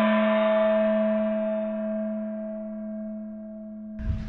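A single struck, bell-like musical note with a gong-like ring, sounded just before and ringing on, slowly fading away.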